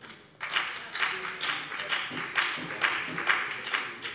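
Applause from part of the chamber: many hands clapping, starting about half a second in and dying down near the end.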